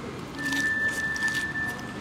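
Crunching of crispy fried-chicken coating being bitten and chewed: a quick run of short crackles. A steady high-pitched tone sounds alongside the crunching for about a second and a half.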